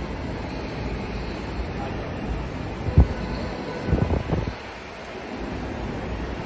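Steady low background rumble at an airport entrance, with one sharp thump about halfway through and a quick cluster of thumps a second later.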